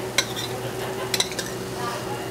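Metal spoon clinking and scraping in a sauté pan as gnocchi in cream sauce is spooned out into bowls: one sharp clink shortly after the start and a quick cluster of clinks just past the middle, over a steady hum.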